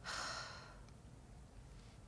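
A single breathy exhalation, like a sigh, loudest at the start and fading out in under a second.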